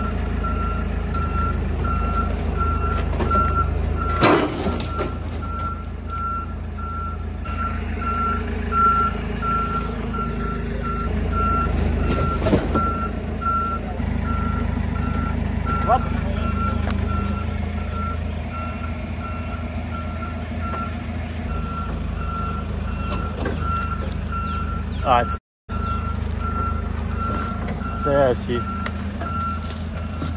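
Forklift engine running, with its backup alarm beeping steadily about twice a second, and a few sharp knocks.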